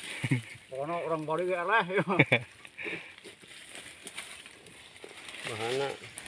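A man's voice calling out with unclear words for about two seconds, then faint crackling and small clicks of dry leaves and twigs being disturbed in the undergrowth, before the voice comes back near the end.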